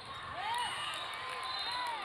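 Athletic shoes squeaking on the sport court in short arched chirps, a few times, over the hum of voices in a large hall.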